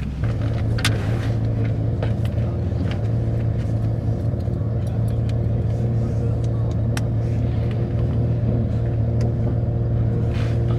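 Toyota GR Supra (MkV) engine idling steadily, heard from inside the cabin, with a few light clicks over it.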